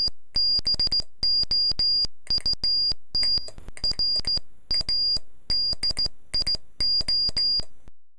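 Morse code sent on a brass straight key: a high-pitched tone keyed on and off in dots and dashes, with a click at each press and release. It comes in about ten letter groups, which likely spell out "ABOUT RADIO".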